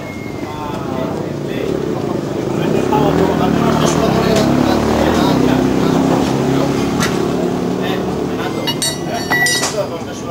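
A motorcycle engine running close by, growing louder through the middle and easing off again, under people talking, with a few sharp metallic clicks of tools near the end.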